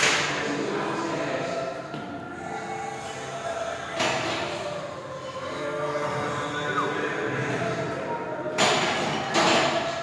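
Gym room sound: faint voices in the background, with a thud about four seconds in and a short burst of noise near the end.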